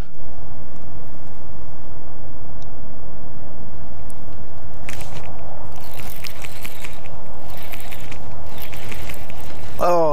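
Wind buffeting the chest-mounted camera's microphone, a loud steady low rumble. A cast about five seconds in is followed by a few seconds of fine rapid ticking from the baitcasting reel.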